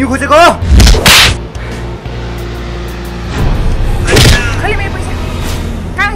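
Fight-scene sound effects over steady background music. A short shouted cry is followed about a second in by two sharp whoosh-and-hit impacts, then another swish and more strained cries around four seconds in.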